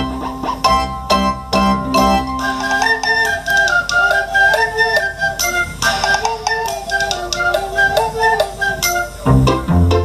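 Recorder ensemble playing a tune together in harmony over an instrumental accompaniment. The recorders come in about two and a half seconds in, and a bass line comes back near the end.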